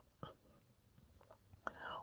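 Near silence in a pause between a man's spoken sentences, with a faint click about a quarter second in and faint, murmured start of speech near the end.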